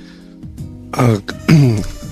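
Soft, steady background music, with a voice starting to speak over it about a second in.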